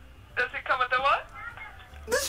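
Speech only: one short spoken phrase about half a second in, in a thin voice that sounds like it comes through a telephone.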